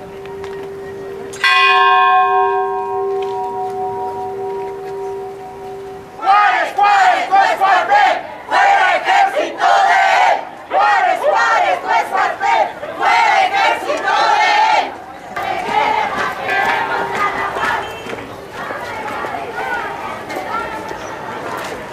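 A large bronze bell is struck once about a second and a half in and rings out, its tone dying away over several seconds. Then a crowd of marchers shouts chants in loud rhythmic bursts for about nine seconds, easing into softer crowd noise near the end.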